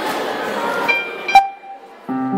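Audience chatter in a large hall. About a second in it gives way to a brief pitched note and a sharp, loud click, and then the room hushes.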